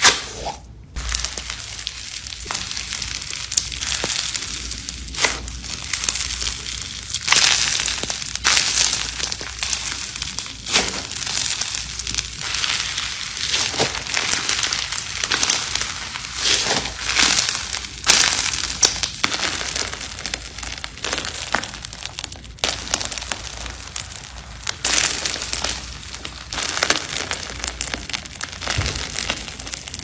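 Grainy lime-green slime being squeezed, kneaded and stretched by hand, giving dense, irregular crackling and crunching with louder crunches scattered throughout.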